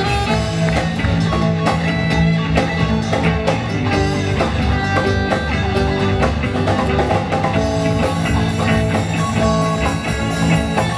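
A live rock band playing, with electric and acoustic guitars over a drum kit keeping a steady beat.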